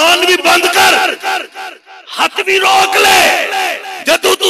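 A man's voice through a public-address loudspeaker, shouted and drawn out in an impassioned, wailing delivery, with a brief pause about halfway through.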